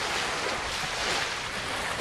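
Steady wind buffeting the microphone over the even rush of small waves on open water.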